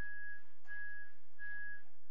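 A repeated electronic beep: one thin high tone sounding three times, about 0.4 s on and 0.3 s off, evenly spaced, over a steady low hum.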